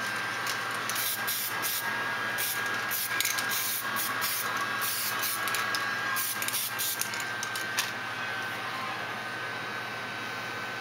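Aerosol spray can of primer hissing in many short bursts over the steady blowing of a Ryobi heat gun. The spraying stops at about eight seconds in, leaving the heat gun running on its own with a thin steady whine.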